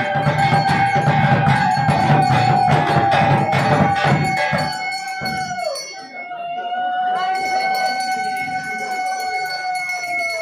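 Rope-laced barrel drums beaten fast and hard, with a conch shell blown in one long held note over them. The drumming stops about halfway through; the conch's note dips as the breath runs out, then a second long blow follows.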